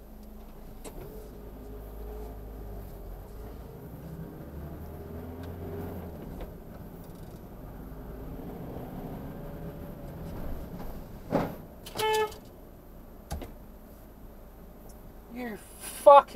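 Car engine and road noise heard from inside the cabin while driving slowly in traffic, then a car horn sounded twice in short blasts about eleven and twelve seconds in.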